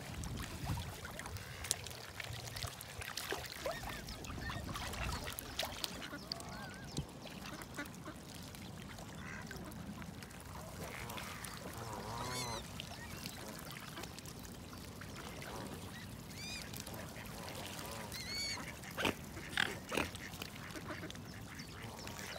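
Mixed waterfowl calling at intervals: mallard quacks and Canada goose calls, scattered short calls with a few higher chirps, over a steady background hiss.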